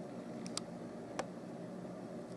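Three faint, short clicks, two close together about half a second in and one just after a second in, over a steady low hum.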